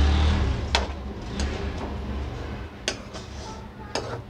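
A metal spoon stirring potatoes, peas and minced meat in a metal cooking pan, with a few sharp clinks of the spoon against the pan, over a low rumble that fades after the first second or so.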